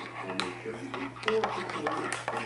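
Metal spoon stirring broth in a ceramic mug, scraping and clinking against the sides and bottom in quick, irregular strokes that come thicker in the second half.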